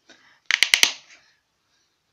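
Four quick, sharp clicks of a hard plastic shower-gel bottle being handled close to the microphone.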